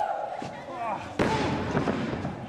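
A sudden loud thud on a wrestling ring's mat a little over a second in, among shouting voices.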